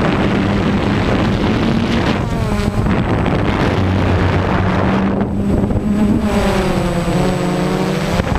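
DJI Phantom quadcopter's motors and propellers running, with wind buffeting the GoPro's microphone. The motor pitch shifts up and down as the throttle changes, about two seconds in and again over the last couple of seconds.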